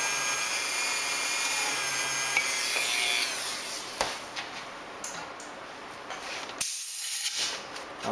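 Dremel rotary tool with a small bit running at a steady high whine as it drills window holes through a photo-etched template into the plastic model saucer, stopping about three seconds in. A single click follows about a second later, then light handling noise.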